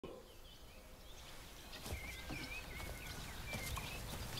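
Faint birdsong: a small bird's short chirping notes repeating over quiet outdoor ambience, with one soft knock about two seconds in.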